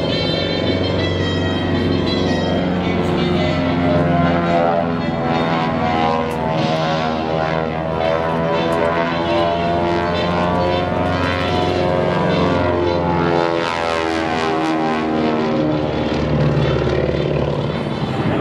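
Twin radial-engine propeller airplane flying aerobatic passes, its steady engine drone bending in pitch as it passes by.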